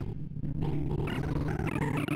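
ArrayVisualizer's sorting sonification: a rapid, unbroken stream of synthesized beeps, one per array access, whose pitch follows the value being touched. While Introspective Circle Sort works through the low values of a sawtooth array, the tones crowd low in pitch. Higher, stepping tones join in after about half a second.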